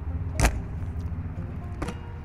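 Two sharp clicks about a second and a half apart from the latches of a fifth-wheel RV's exterior compartment doors, the first and louder as a door is latched shut. A low steady rumble runs underneath.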